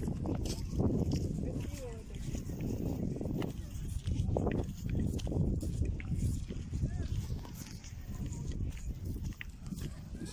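Indistinct voices of people on a beach, heard over a low, uneven rumble.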